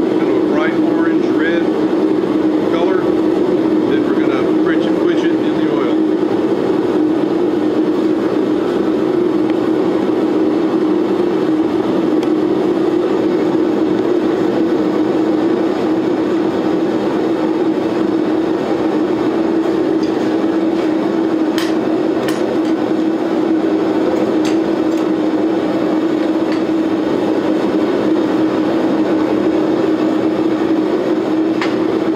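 Propane gas forge running on two burners: a steady rush of burning gas with a constant low drone underneath, heating a Damascus blade for hardening. A few faint clicks come about two-thirds of the way through.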